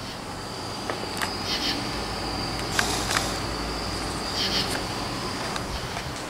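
Crickets singing on a warm night: a steady high trill, with two louder chirping bursts about a second and a half in and near the end. A steady low fan hum runs underneath.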